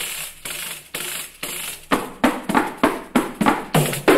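Choro ensemble playing, with bandolim (Brazilian mandolin), seven-string and six-string acoustic guitars and pandeiro. The sound thins out for about the first two seconds, then the full strummed rhythm comes back in.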